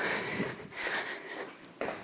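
A woman breathing hard from exertion during a cardio exercise, a few quick breaths in and out.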